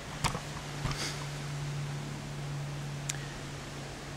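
A steady low hum with a few faint rustles and knocks from a rubber pond liner being pulled into place.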